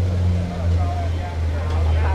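Background chatter of a gathered crowd over a steady low rumble.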